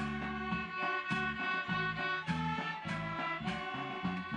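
School orchestra playing an upbeat piece: violins carrying the melody over a bass line, with a regular beat of percussion strikes including hand cymbals.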